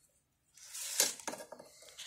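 A chainsaw being handled and turned over on cardboard: a brief scraping rustle, then a sharp click and a few lighter clinks and knocks from its metal and plastic parts.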